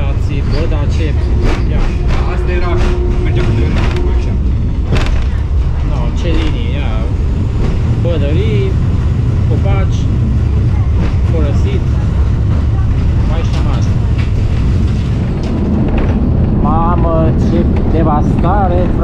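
Cabin of an old Malaxa diesel railcar under way: a heavy, steady running rumble with frequent irregular knocks and rattles from the wheels on the track and the body. Bits of passenger voices come through in places, most plainly near the end.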